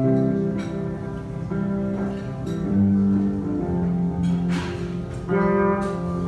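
Amplified electric guitar playing a slow instrumental intro of sustained notes and chords that ring and change about once a second.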